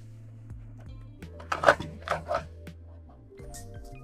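Soft background music with steady low notes. About halfway through come a few short, loud clunks, likely the lever of a Mini Cinch hand binding punch being pressed down to punch a row of square holes through a paper cover. Near the end there is a faint rustle of paper.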